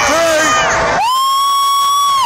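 A packed street crowd cheering and shouting; about halfway through, one shrill held scream right by the microphone rises in and stays on a single pitch, drowning out the rest.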